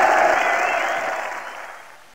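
Crowd applause and cheering, fading out steadily over the two seconds.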